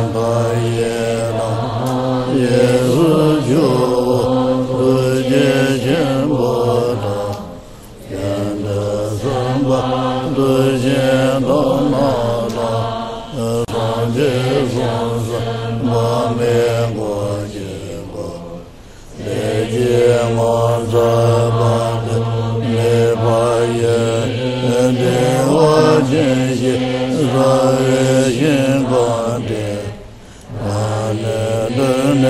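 Buddhist chanting of an aspiration prayer to Amitabha Buddha, recited in a low, steady, sing-song monotone. It pauses briefly for breath about 8 and 19 seconds in.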